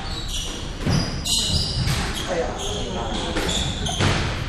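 Squash court shoes squeaking on a sprung wooden floor as players move, with footfall thuds and a couple of sharper knocks about a second in.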